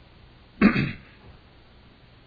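A man clears his throat once, briefly, a little over half a second in.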